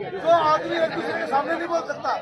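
Speech only: a man talking into a handheld microphone over crowd chatter.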